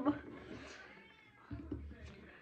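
A woman's wordless voiced sounds, made while signing, trailing off at the start, then faint room tone with a short low bump about one and a half seconds in.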